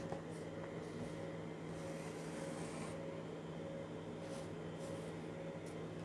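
Faint steady electrical hum of room tone, with the light scratch of a felt-tip marker drawing a line on pattern paper.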